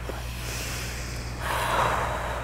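Deep breathing close to a clip-on microphone: a slow breath fading out just after the start, then after a short pause another long breath out through pursed lips, beginning about a second and a half in.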